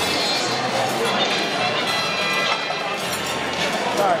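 Background music playing over the steady chatter of a crowded banquet hall.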